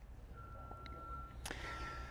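A faint, steady high tone that starts just after the pause begins and runs on, cut by a single sharp click about a second and a half in, over low room rumble.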